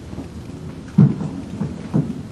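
A dull, low thump about a second in and a shorter one near the end, over a low rumbling background noise.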